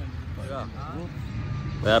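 Steady low outdoor rumble under faint, distant voices, with a man's voice starting loudly near the end.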